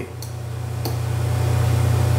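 A steady low hum throughout, with two faint clicks, one about a quarter second in and one just under a second in.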